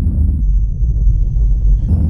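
Deep, steady low rumble of a cinematic logo-intro sound effect.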